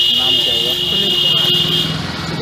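A steady, high-pitched buzzing tone, held without a break and cutting off just before the end, over voices talking.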